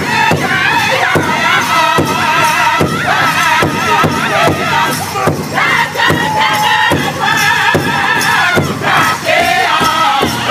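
A powwow drum group singing a song in loud, high-pitched unison, men's and women's voices together, over a steady beat struck together by several drummers on one large hide powwow drum.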